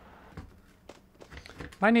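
A few light clicks and knocks of hands handling computer parts on a desk, over a faint steady hum, then a man starts speaking near the end.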